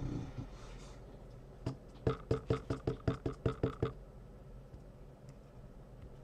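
A clear acrylic stamp block with a poppy stamp tapped quickly on an ink pad to ink the stamp: about ten sharp light knocks, about five a second, starting about two seconds in.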